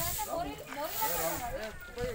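People talking close by, with the scratchy swish of a long stick broom sweeping a dusty dirt road under the voices.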